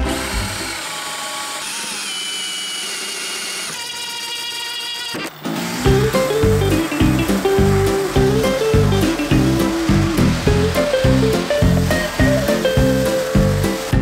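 A power tool runs with a steady whir for about the first five seconds, then cuts off. Background music with a steady beat and a melody takes over for the rest.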